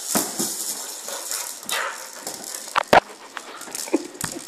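A dog's ball rattling and knocking as a kelpie paws and noses it about on floorboards and a rug, with scattered clicks and two sharp knocks just before three seconds in.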